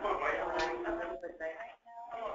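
Indistinct talking in the room: voices chatting too unclearly for words to be made out, with a brief pause near the end.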